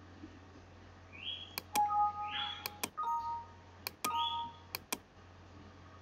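Computer mouse clicks in quick pairs, three or four times, several of them followed by short electronic beeps that step between two pitches, like a two-note chime, with a few faint rising chirps between them.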